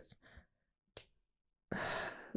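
Mostly a quiet pause with a faint mouth click about a second in, then a woman's breathy sigh starting near the end as she hesitates, searching for a word.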